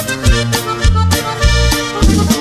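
Norteño band music in an instrumental passage: accordion playing over a bass line that repeats about every half second.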